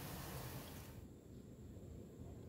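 Faint room tone: a low steady hum and hiss with no distinct events.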